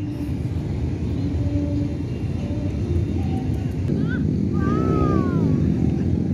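A steady low rumble, with a faint voice calling out, rising and falling, about four to five seconds in.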